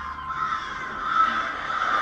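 Crows cawing, part of the sound design of a TV series trailer.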